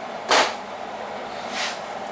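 One sharp clack of a hard object knocking in the kitchen about a third of a second in, then a softer brief brushing sound near the end.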